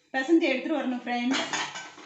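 Stainless steel bowl clinking and scraping against the rim of a steel mixing vessel, with a short wavering metallic ring, then a rattling scrape from about a second and a half in.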